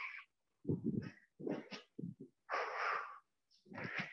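A person breathing hard in short hissing bursts while moving through squash footwork and swings, with short low thuds of footsteps on the wooden court floor. The sounds come in separate bursts with dead silence between them.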